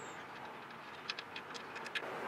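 Faint clicks and light scraping in the second half as an oil drain plug is turned out by hand, over a steady low hiss.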